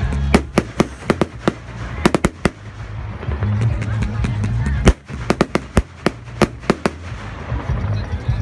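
Fireworks going off in quick succession: sharp bangs and crackles in clusters, the loudest bang just before five seconds in, over a steady low rumble.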